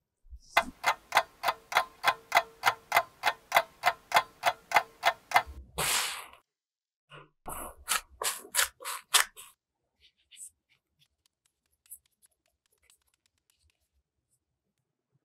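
Clock-ticking sound effect, about four ticks a second for some five seconds, ending in a short hiss. A couple of seconds later comes a brief run of soft knocks and rustles as the risen dough is handled in its glass bowl.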